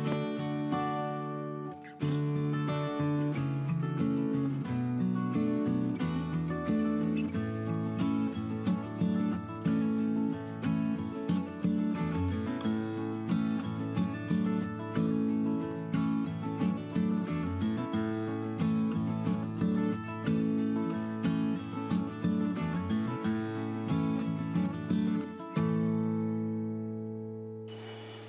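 Instrumental background music with a steady run of notes over held chords, fading out near the end.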